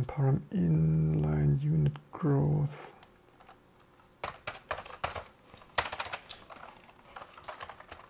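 A man's voice for a couple of seconds, then typing on a computer keyboard: irregular key clicks through the second half.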